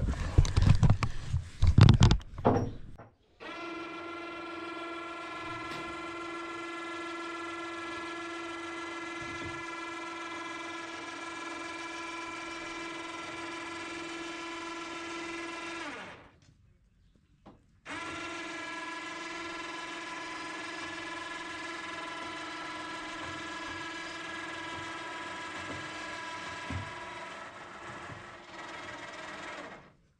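A few loud knocks in the first two seconds. Then a small motor runs with a steady high whine, winds down in pitch and stops about 16 seconds in, starts again about two seconds later, and runs on until near the end.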